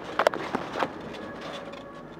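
A few sharp knocks and rattles, about three close together near the start and another a little under a second in, from the handheld camera being moved about and bumped against the car's dashboard.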